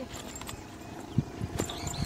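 Footsteps walking down a dry dirt path: a quick run of soft thumps from about a second in, the first the loudest. Faint bird chirps are heard near the end.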